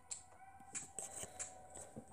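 Faint handling noise: a few scattered light clicks and rustles as small toy parts are moved in the hands.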